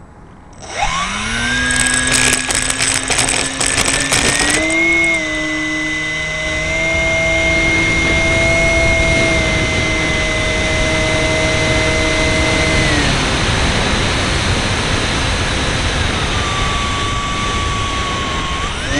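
Electric motor and propeller of a Multiplex Fun Cub model plane, heard from a camera on board. The motor winds up with a rising whine just under a second in, then holds a steady high whine over rushing wind on the microphone, with a rattle for the first few seconds. It is throttled back about thirteen seconds in, and a lower whine comes back near the end and rises again.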